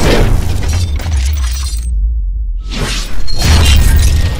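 Cinematic logo-intro sound effects over a constant deep bass: sweeping whooshes and a shattering crash. The highs drop out briefly a little past halfway, then a rising sweep leads into a loud hit near the end.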